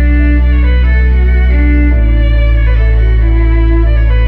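Electric violin playing a slow melody over sustained low bass backing, amplified through a concert sound system, with the bass moving to a new chord about halfway through.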